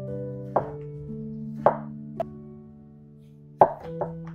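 Chef's knife slicing a raw peeled potato into thin rounds, the blade knocking on a wooden cutting board four times at uneven spacing, the last knock the loudest near the end. Gentle background music with held notes plays throughout.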